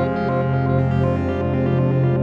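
Instrumental ambient music: sustained, layered tones over a steady low note, with the upper notes changing slowly.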